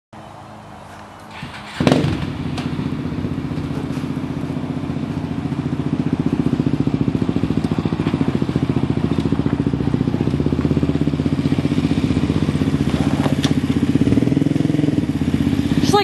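ATV engine starting up about two seconds in, then running steadily with a fast, even firing pulse, growing a little louder partway through.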